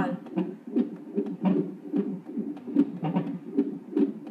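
Cardiotocograph's Doppler fetal heart monitor playing the unborn baby's heartbeat as rapid, even pulses, at a rate within the normal fetal range of about 150 beats a minute.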